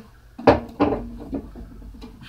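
Two sharp knocks about a third of a second apart, followed by softer handling and bumping sounds, as of things being set down or knocked against a tabletop close to the microphone.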